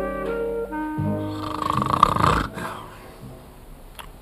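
The last notes of a theme tune on wind instruments, then a man snoring loudly in a rough, rumbling snore, heaviest between about one and two and a half seconds in, before quieter room sound.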